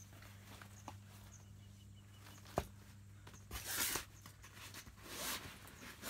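Fabric of a Primos Double Bull pop-up ground blind rustling as a window panel and its mesh are handled, in two short swishes in the second half, after a couple of sharp clicks earlier, over a faint steady hum.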